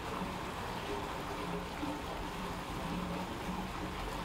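Steady rushing noise of water in a seal pool.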